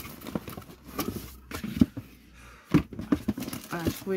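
Light knocks, clicks and rustles of hands rummaging through a cardboard subscription box and its wrapped goodies, a few short, irregular taps. A brief vocal "ah" comes near the end.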